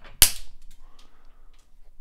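Diagonal cutters snapping through a 0.040-inch wire spinner shaft: one sharp, loud snip with a brief ring. A few faint ticks follow.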